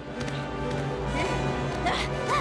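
Orchestral film score playing under the footsteps of a cartoon Triceratops taking a running start.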